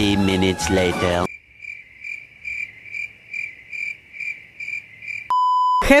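Cricket chirping sound effect, the comic stand-in for an awkward silence while a guest is stuck for a word: an even chirp about twice a second for about four seconds. It follows a short burst of music and voice at the start, and a steady beep cuts in near the end.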